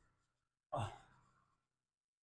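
A short sighing exhale from a person close to the microphone, about a second in, fading quickly.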